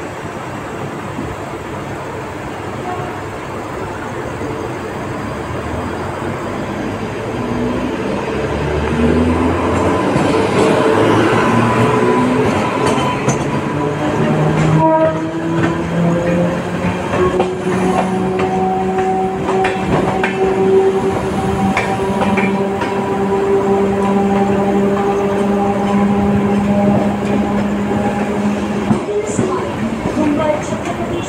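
Express train hauled by a WAP-7 electric locomotive gathering speed out of the station, heard from an open coach doorway. The running noise grows louder about eight seconds in, with wheel clacks over the points and a whine that rises in pitch for several seconds and then holds steady.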